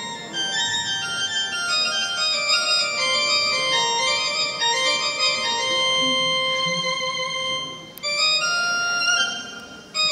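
Arabic music orchestra playing an instrumental passage: a melody in held notes stepping from pitch to pitch, with brief breaks in the sound near eight seconds and again just before ten seconds.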